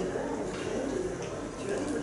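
A faint, distant voice asking a question from the audience, picked up off-microphone.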